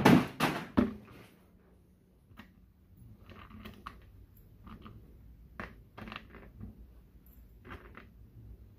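Hand tools (pliers and a screwdriver) set down on a workbench top with a few sharp clatters in the first second, then small brass switch contacts clicking faintly as they are picked up by hand.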